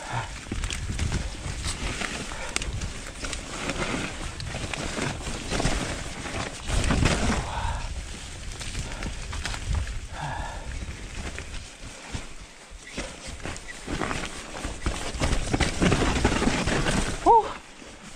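Mountain bike ridden fast down a rough forest dirt trail: steady tyre noise on dirt with the bike rattling and knocking over bumps. A few short vocal sounds from the rider come through, around the middle and near the end.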